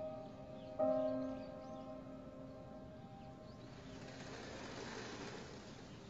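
Soft background score: a bell-like chord is struck about a second in and rings out, slowly fading. Near the middle a soft hiss swells and dies away.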